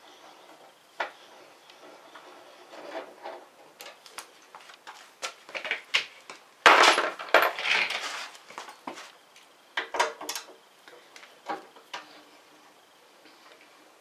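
Metal hand tools clinking and clicking as a socket wrench is worked on the bolts of a motorcycle's rear fender strut, with a louder stretch of rattling metal clatter in the middle.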